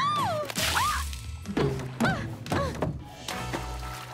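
Cartoon soundtrack: a playful music score with sliding notes, punctuated by a few comic thuds.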